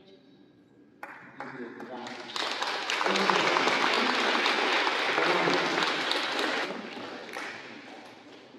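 Congregation applauding in a church; the clapping builds about two seconds in, holds for several seconds, and dies away near the end.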